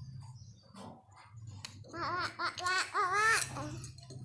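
A young child giggling and babbling: a quick run of short rising-and-falling syllables in the second half, over a steady low hum.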